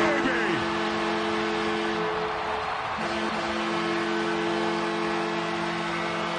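Arena goal horn sounding a long, steady multi-tone chord in two blasts, with a short break about two seconds in, over the home crowd cheering a goal.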